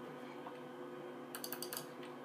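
A quick run of sharp computer mouse and keyboard clicks about one and a half seconds in, as files are scrolled and selected, over a faint steady hum.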